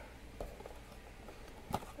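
Faint handling noise of a cardboard trading card blaster box being picked up by hand: a few soft ticks, then one sharper tap near the end.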